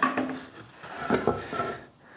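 A glued-up walnut board being handled on a wooden workbench: a few light knocks and scrapes as it is moved and lifted.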